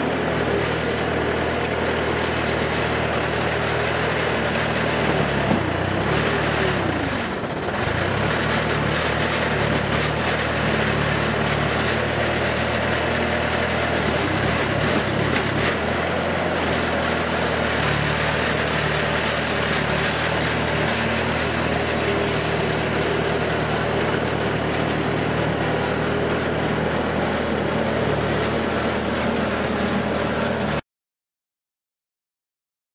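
Bobcat S220 skid steer's diesel engine running steadily while the machine works on tracks in deep mud. About seven seconds in, the engine note briefly sags and recovers.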